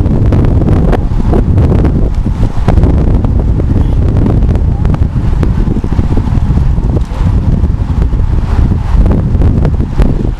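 Wind noise on the microphone of a camera carried on a moving road bike: a loud, continuous low rumble with frequent irregular buffeting pops.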